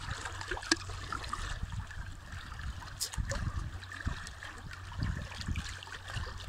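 A handheld can opener being worked around the lid of a surströmming tin, giving a few sharp metal clicks as it cuts. Behind it is a steady rushing background.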